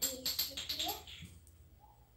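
Small plastic pearl beads clicking and rattling against each other as a finished beaded bracelet is handled, a quick run of clicks in the first second that then dies away.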